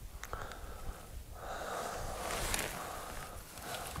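A person breathing close to the microphone, with a long, soft breath through the middle and a few faint clicks early on.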